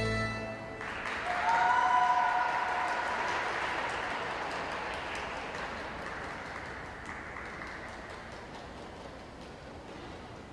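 The skating program's music ends about half a second in, and the audience's applause starts, with a high-pitched cheer soon after. The applause then slowly fades away.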